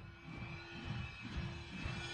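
A low, rumbling whoosh sound effect that slowly swells in loudness over a faint steady hum: the build-up of a logo sting.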